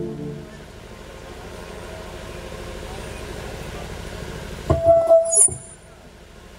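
Steady low hum from the stage PA system, then a few loud microphone knocks with a brief ringing tone about five seconds in.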